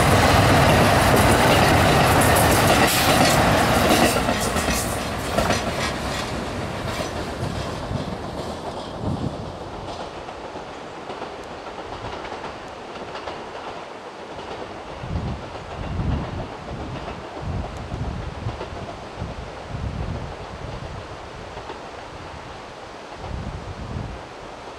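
KiHa 189 series diesel limited express train passing close: diesel engines running and wheels clacking over rail joints, loud for the first few seconds and fading away over about ten seconds. After that, low gusts of wind buffet the microphone.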